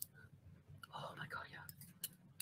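Faint whispered voice for about a second, near the middle, over a low steady hum.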